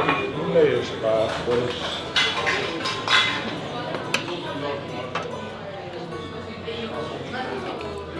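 Busy bar background: several people talking at once, with dishes and glasses clinking and a few sharp clinks.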